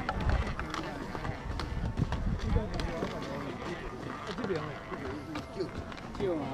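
Voices of several people talking, children among them, with footsteps on the suspension bridge's deck.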